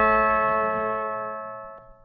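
The final chord of a country record, steel guitar to the fore, ringing out and slowly fading away to nothing, with a faint click near the end.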